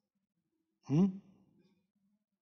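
A man's short questioning "hmm?", rising in pitch, about a second in. The rest is near silence.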